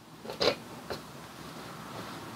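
Light knocks and scraping of a metal table pole being slid into the steel tube of its base: a sharper knock about half a second in, a smaller tick shortly after, then faint handling rustle.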